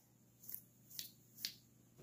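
Three quiet, short, sharp clicks about half a second apart, the last one the loudest.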